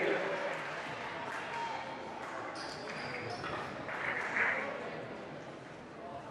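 Gymnasium crowd murmur and scattered distant voices, echoing in a large hall, during a stoppage in a basketball game.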